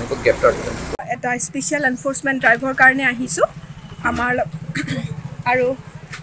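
Speech: a man's voice, then after a cut a woman's voice, with a steady, evenly pulsing engine idling underneath from about a second in.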